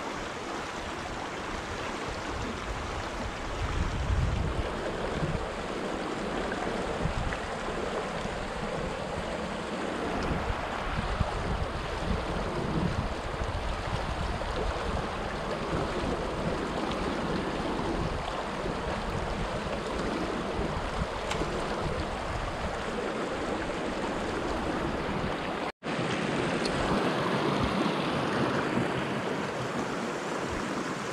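Shallow mountain river rushing steadily over rocks, with gusts of wind buffeting the microphone as a low rumble, strongest about four seconds in. The sound cuts out for an instant about 26 seconds in.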